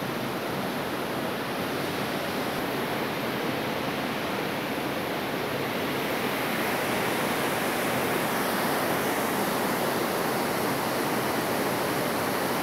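Large waterfall rushing steadily as water pours down over rocks, growing a little louder about halfway through.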